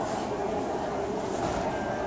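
Steady crowd hubbub in a large hall: many indistinct voices blended into a constant murmur.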